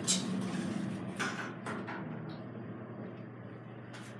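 Fujitec traction elevator car descending: a steady low hum of the ride, with a few light clicks in the first two seconds, growing a little quieter.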